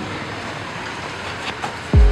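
Steady, even background noise with no clear pitch, like room or street ambience hiss, with a couple of faint clicks about one and a half seconds in.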